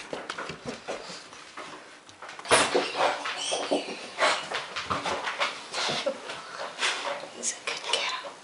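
Pet dogs moving about close by, with a person's voice talking to them and scattered knocks and clatter. It gets abruptly louder and busier about two and a half seconds in.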